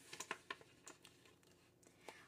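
Faint, light clicks and rustles of plastic cash-envelope pockets in a ring binder being handled and turned, mostly in the first second, then near silence.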